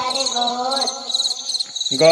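Rhythmic, high cricket-like chirping repeats steadily in the backing track, over a pitched voice or melody. Near the end a voice starts the Hindi word 'kharagosh' (rabbit).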